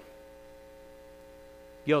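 Faint steady hum of several held tones. A man's voice starts right at the end.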